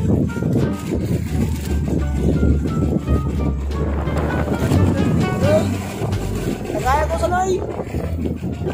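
A person's voice, with music in the background, over a steady low rumble.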